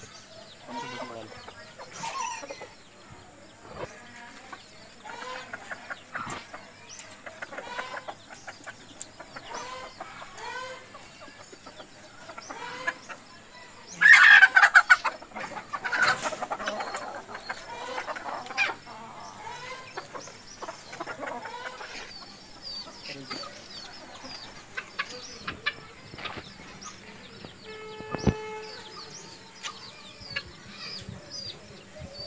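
Backyard chickens clucking again and again, with a loud rooster crow about halfway through, the loudest sound here. A short steady tone sounds near the end.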